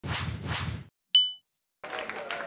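Video intro sound effect: two quick whooshes, then a single bright ding that rings briefly and dies away.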